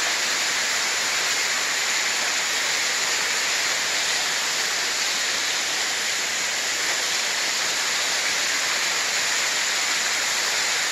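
A waterfall cascading down a rock face. It makes a steady, even rush of falling water.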